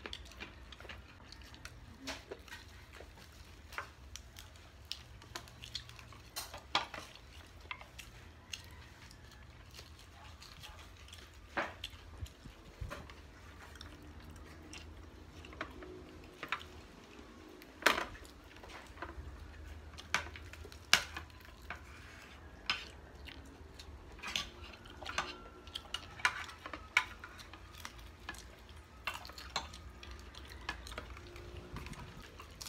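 Eating at a table: scattered light clicks and taps of plastic plates and small sauce bowls as fried chicken is picked up and dipped, with faint chewing. The sharpest knocks come about 18 and 21 seconds in.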